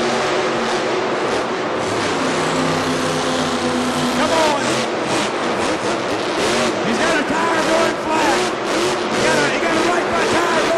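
A motor running with a steady drone from about one and a half to four and a half seconds in, over a continuous noisy background with voices.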